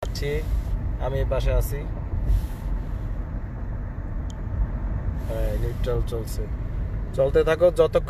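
Steady low rumble of road and tyre noise inside a moving car's cabin, with short snatches of a man's voice and his talk resuming near the end.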